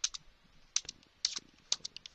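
Computer keyboard keystrokes as numbers are typed in. The clicks come in quick pairs, a digit and then the space bar, about every half second.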